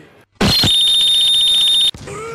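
Added sound effect: a sudden hit followed by a loud, high, buzzing alarm-like tone held for about a second and a half, cutting off abruptly just before the end.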